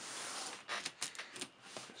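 A shrink-wrapped cardboard box being handled and shifted on a desk: a short scraping hiss about half a second long, then a few crinkles and light knocks of plastic wrap and cardboard.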